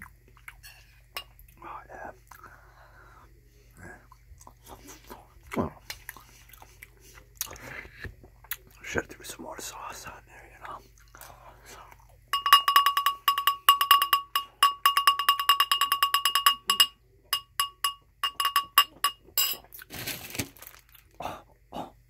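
Close-miked eating of pasta in sauce: wet chewing and mouth sounds, then a little past halfway a metal spoon scraping and clinking rapidly against a ceramic bowl for several seconds, the bowl ringing with each strike, followed by a few scattered clinks and more chewing.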